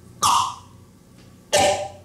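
Electronic synthesizer playing a slow, evenly spaced pattern of short percussive hits, two in this stretch a little over a second apart, each starting sharply and dying away within half a second, and each with a different pitch.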